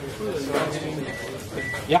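Two short electronic beeps, each about a quarter second long and at the same pitch, from the DIY CO2 laser cutter's controller as it is switched on, over a man's voice.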